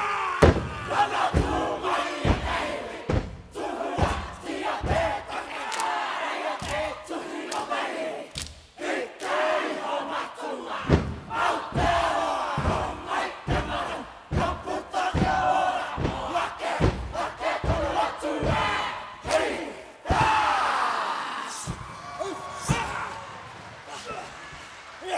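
Kapa haka group performing a haka: many voices shouting a chant in unison, punctuated by sharp stamping and slapping thumps about once a second. The shouting dies away in the last couple of seconds.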